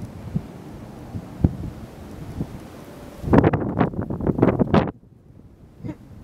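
Wind buffeting a camera microphone: a low rumble with a few thumps, then a louder, harsher gusting passage a little past halfway that cuts off suddenly.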